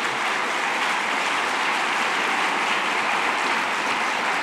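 Sustained applause from a large audience, an even clapping that holds steady.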